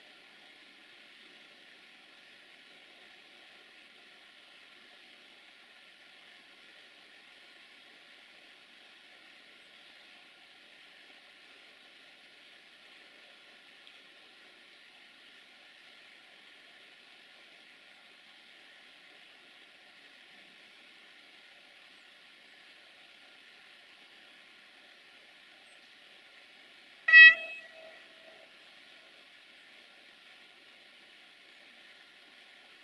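Desiro VT642 diesel multiple unit giving one short horn toot near the end as it approaches. Before it there is only a faint steady hiss.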